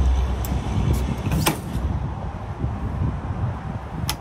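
Stainless steel pontoon boarding ladder being folded up by hand, its metal tubes giving a couple of sharp clanks, the loudest about a second and a half in, over a steady low rumble.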